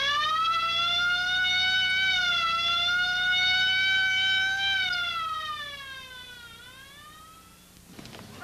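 Ambulance siren giving one long wail: it rises, holds with a slight waver for about five seconds, then falls away near the end.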